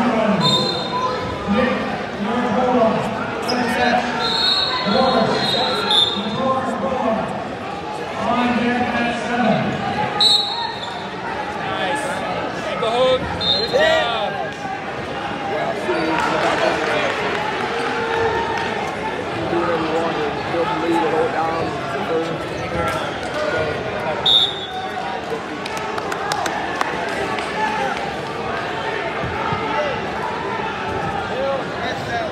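Echoing gym full of overlapping voices from coaches and spectators around several wrestling mats, with occasional thumps. Short referee whistle blasts sound several times, the clearest in the first half and once more near the end.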